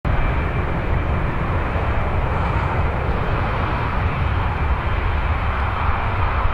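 Jet engines of a taxiing Boeing 747-200 freighter running at low taxi power: a steady noise, heaviest in the low end, that holds level without rising or falling.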